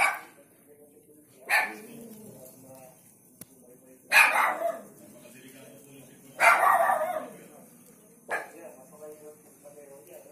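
A dog barking loudly several times, the barks a second or two apart, among people talking.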